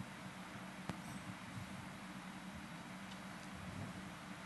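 Quiet room tone in a large hall through the PA: steady hiss and a faint low hum, with one short click about a second in.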